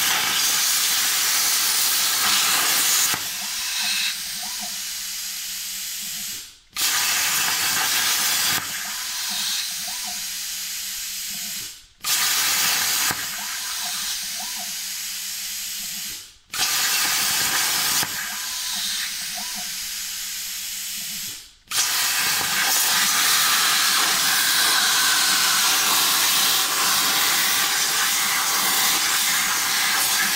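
CNC plasma cutting torch hissing as it cuts sheet metal, in a series of short cuts. Each cut gives a few seconds of loud hiss, which drops to a quieter hiss with a low hum and cuts out briefly before the next cut starts. The last cut runs about eight seconds without a break.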